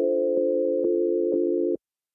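Background music: sustained chords with a soft tick about twice a second, cutting off suddenly near the end.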